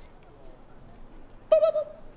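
A man's voice saying a single steady-pitched 'boop' into a handheld microphone about one and a half seconds in, the first note of a mock 'impression of the Navy.'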